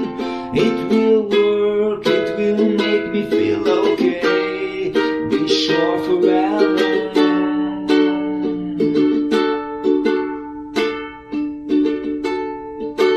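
Ukulele strummed in chords, instrumental with no singing. The strumming thins out and gets softer over the last few seconds.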